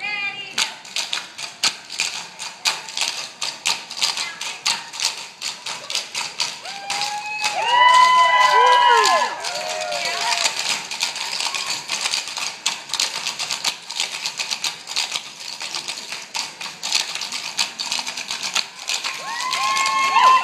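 A cappella tap dance: a team of dancers' shoes tapping in rapid, rhythmic unison on a wooden stage floor, with no music. High voices whoop over the taps about eight seconds in and again near the end.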